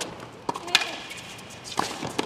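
Tennis ball being struck by racquets and bouncing on a hard court during a doubles rally: about four sharp cracks, the loudest about three-quarters of a second in.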